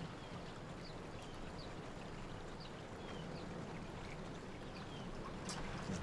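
Quiet outdoor background: a steady low rush with a few faint, short high chirps scattered through it.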